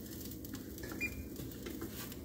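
A spatula working French toast on a griddle pan: a few faint light clicks over a low steady background.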